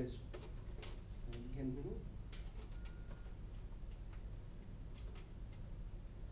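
Scattered light clicks over a steady low hum, with a brief faint voice about a second and a half in.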